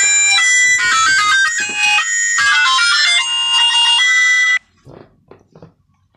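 A loud electronic 'winner' jingle: a bright run of quick stepping notes that lasts about four and a half seconds and cuts off suddenly.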